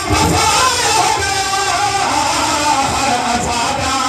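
Amplified live devotional music for a qasida: a plucked string instrument plays a wavering melody over low thumping beats, heard through a loudspeaker system.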